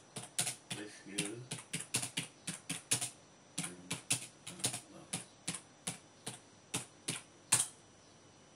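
Typing on a computer keyboard: irregular keystrokes, about three or four a second, with a short pause in the middle and a last, loudest key press about half a second before the end.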